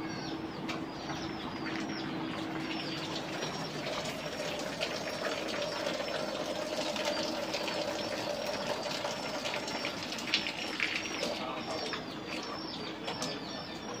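Small birds chirping over and over, many short, high, falling chirps, over a steady background hum.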